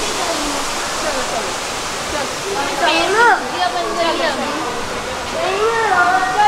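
Steady rush of water falling from a large indoor waterfall, with a high voice rising and falling about halfway through and again near the end.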